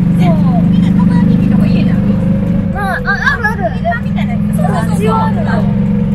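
Golf cart running with a steady low hum under women's chatter; the hum dips and shifts about three seconds in, then carries on.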